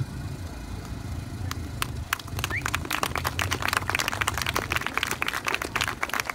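Applause from a small open-air crowd: a few scattered claps at first, building to steady clapping from about two seconds in, over a low steady rumble.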